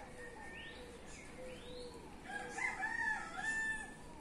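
A rooster crowing once, a pitched multi-part call lasting just under two seconds in the second half.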